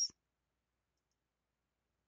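Silence, with only the hissy end of a spoken word at the very start.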